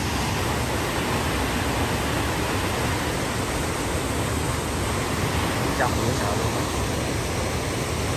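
Fast mountain stream rushing over rocks in whitewater rapids, a steady, even rushing of water.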